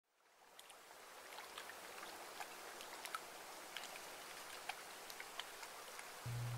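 Faint lake water lapping at the shore, with many small scattered drips and splashes. It fades in after about a second.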